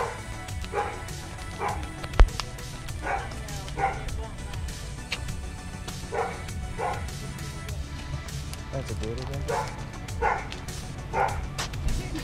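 A dog barking repeatedly, short barks often coming in pairs. There is a single sharp knock about two seconds in.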